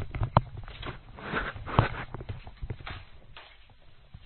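Footsteps and knocks of a person getting up and walking away from the microphone, with two sharp knocks in the first two seconds, then growing fainter.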